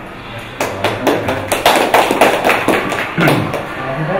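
A small group clapping by hand: a brief burst of applause that starts about half a second in and stops shortly before the end.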